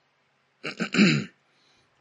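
A man clearing his throat: one short clearing in a few quick pulses, starting about half a second in and over within a second.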